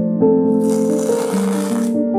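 Masking tape being peeled off a canvas: a single noisy rip starting about half a second in and lasting a little over a second, over soft piano music.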